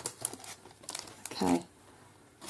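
Paper and cellophane sticker packets rustling and crinkling as they are handled, in short irregular bursts, with a brief voice sound about one and a half seconds in.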